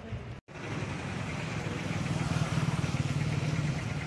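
A motor vehicle engine running with a steady low rumble that grows gradually louder, as if coming closer. The sound cuts out briefly just under half a second in.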